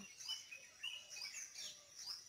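Faint chirping of small birds: several short, high calls scattered through the pause.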